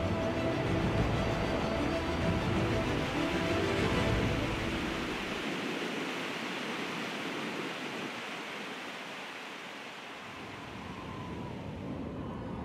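Rushing water of a fast-flowing, swollen mountain stream: a steady noise of churning water that thins and fades over the second half. Soft music lies under it at first.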